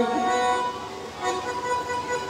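A man's amplified chanted phrase ends right at the start, then a harmonium plays steady held notes, faint at first and growing clearer about a second in, as a devotional bhajan begins.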